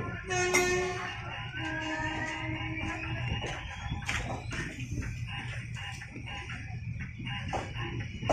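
A rooster crowing once early on: a short note, then a longer held note lasting about a second and a half, over a steady low background rumble.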